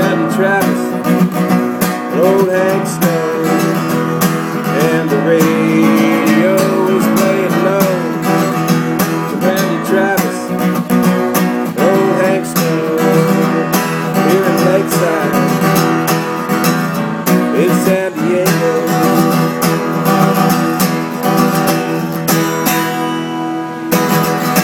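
Acoustic guitar played solo, strummed and picked in a steady rhythm.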